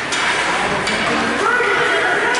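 Ice rink game noise: a steady wash of sound from skates on the ice and spectators. About one and a half seconds in, a voice calls out with a held shout.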